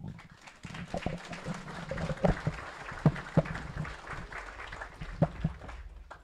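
Audience applauding: a dense patter of many hands clapping with a few louder single claps standing out, tapering off near the end.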